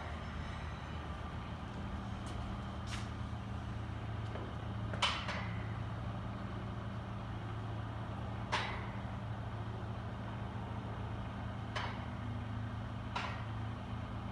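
A loaded barbell clinks sharply against its plates and the power rack's hooks several times, a few seconds apart, as it is shifted and raised on the shoulders. A steady low hum runs under it.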